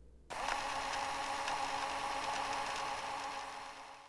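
Fast-forward sound effect: a steady mechanical whirring that cuts in just after the start and fades out near the end.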